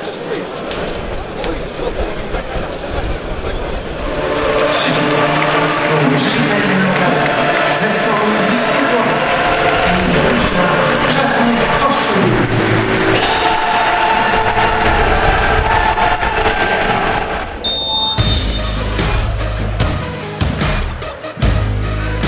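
Background music: voices in the first few seconds, then music builds, switching abruptly near the end to a heavier section with deep bass and a hard beat.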